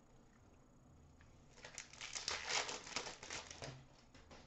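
Crinkling of a trading-card pack wrapper as the pack is torn open and the cards are pulled out. The crinkling starts about one and a half seconds in and lasts about two seconds.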